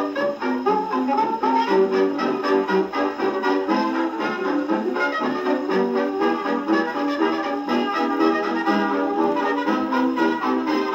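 A 1927 Banner 78 rpm shellac record of a jazz dance band played on an acoustic gramophone: an instrumental passage with brass instruments leading over a steady dance beat.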